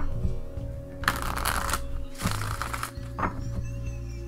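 A deck of oracle cards being riffle-shuffled twice, each riffle a short fluttering burst under a second long, with a few card clicks as the halves are handled. Background music runs underneath.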